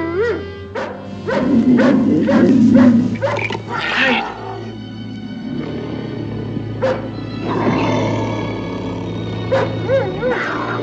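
A dog barking in a quick series over the first few seconds, then single barks later on, heard over a steady music score.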